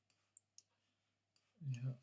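Four short, sharp clicks of a computer mouse: three close together, then one more about a second later. A man's voice starts near the end.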